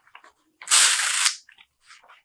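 A page of a thick hardcover omnibus being turned by hand: a few soft clicks and rustles, then a loud papery swish lasting under a second, then a couple of small ticks as the page settles.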